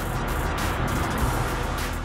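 Background music over the noise of a Mazda MX-5 Miata driving close by on a track.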